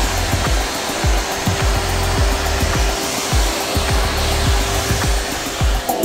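Agaro Storm 2000-watt canister vacuum cleaner running steadily, its motor rushing with a constant hum, and cutting off just before the end. Background music with a regular bass beat plays underneath.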